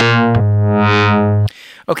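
Ableton Operator FM synth playing sustained notes, its tone brightening and dulling about once a second as an LFO at 55% depth sweeps the level of oscillator B. The bass note changes partway through, and the sound cuts off sharply about one and a half seconds in.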